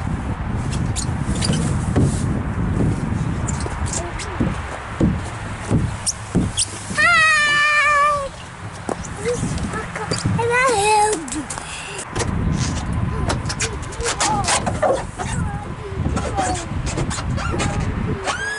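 A child sliding down an enclosed plastic tube slide: a low rubbing rumble with scattered knocks for about twelve seconds. About seven seconds in there is one long, high, wavering squeal, and a short falling call comes as he reaches the bottom.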